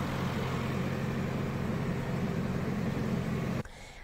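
Steady low engine hum under an even hiss, like a motor vehicle idling, which cuts off abruptly about half a second before the end.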